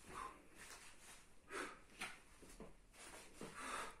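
Faint, short bursts of sound from a man working through a dynamic plank exercise: his breaths and the shuffle of his hands and shoes on a foam mat and wooden floor, several times over.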